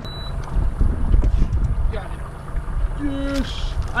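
Wind rumbling unevenly on the microphone aboard a small boat, loudest about a second in, with a few faint clicks. A man's short hum comes about three seconds in.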